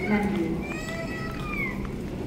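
A single high-pitched, drawn-out whine lasting about a second, rising slightly and then sliding down in pitch at the end, over faint background voices.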